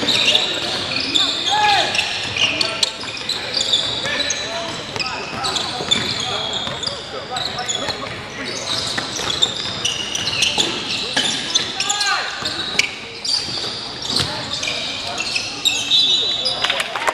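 Basketball game on a hardwood gym floor: the ball bouncing, sneakers squeaking in short high-pitched chirps, and players calling out, all echoing in a large gym.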